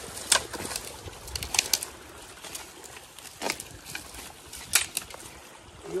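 Water splashing in short, irregular sharp bursts, about six over a few seconds, against a faint outdoor background.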